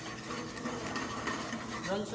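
Butter sizzling and crackling steadily in a hot frying pan as it is stirred and browned, under faint background chatter.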